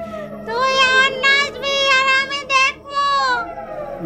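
A woman's high-pitched, wavering ghostly cackle, drawn out in about five long peals.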